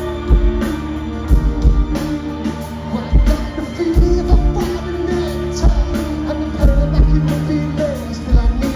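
Live rock band playing: a heavy kick-drum beat under bass guitar and electric guitar, with a voice singing over it.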